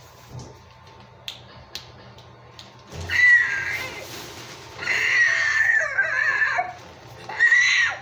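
A child voicing a dinosaur, three high-pitched cries: a short one about three seconds in, a longer wavering one about five seconds in, and a short one near the end.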